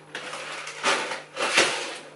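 Grocery packaging being handled: plastic and bag rustling as one item is set down and the next picked up, loudest about a second in and again a moment later.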